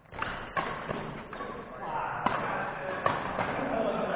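Scattered sharp knocks and thuds of badminton play, racket strikes and footfalls on a wooden sports-hall floor, echoing in the hall. Indistinct voices talk from about halfway in.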